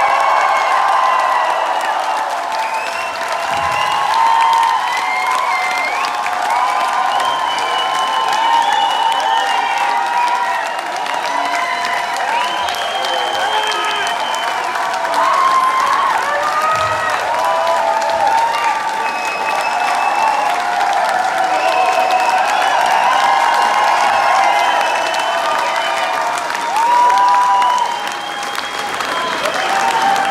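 Concert crowd clapping and cheering at the end of the band's final song, many voices yelling and whooping over steady applause.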